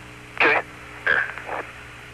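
Astronaut's radio voice channel with a steady electrical hum, broken by three short vocal sounds from the astronauts: one about half a second in and two more after the first second.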